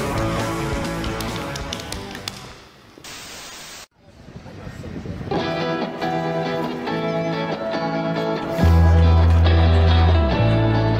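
Rock music with guitar that fades out about three seconds in, then a short hiss and a brief cut to silence. A new music track builds up after it, with a heavy bass entering near the end.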